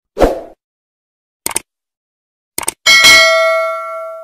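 Subscribe-button animation sound effects: a short pop, two quick clicks, then a bright bell ding that rings out and slowly fades.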